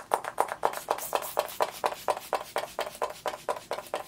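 MAC Prep + Prime Fix+ pump spray bottle misting the face: a quick run of short hissing spritzes, several a second, that stops near the end.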